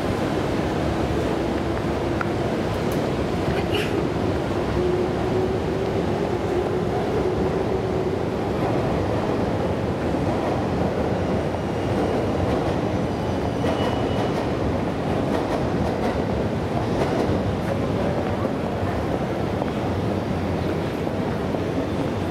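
Steady noise of a busy city street: a constant rumble of traffic, with a low hum that slides slowly down in pitch over the first several seconds.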